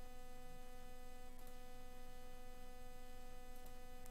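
Faint steady electrical hum in the recording: a few fixed, unchanging tones over low hiss.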